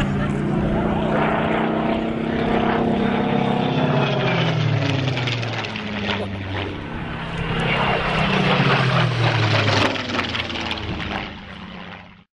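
Small propeller airplane flying low overhead, its engine drone dropping in pitch as it passes by, twice over, then fading away near the end.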